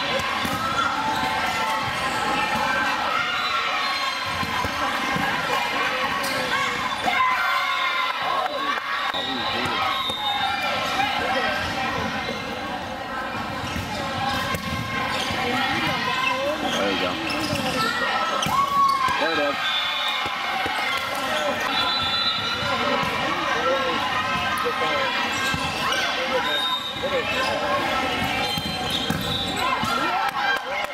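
Indoor volleyball play: the ball being struck and landing in repeated slaps and thuds on the hard court. Players and spectators call out and chatter over it throughout.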